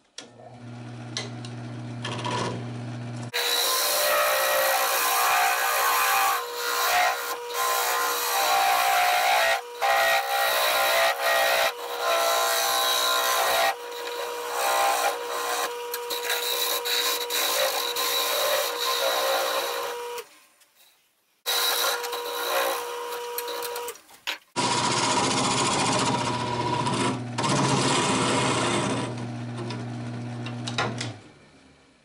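Wood lathe motor humming, then a turning gouge cutting into a spinning green sassafras root bowl blank: a loud, continuous scraping over the steady whine of the lathe. The cutting breaks off for about a second two-thirds of the way through and then carries on.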